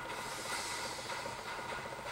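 Steady, featureless hiss of background noise.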